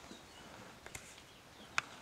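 A few faint, light clicks from hands handling the bandsaw's upper blade guard, with one sharper click near the end. The saw is not running.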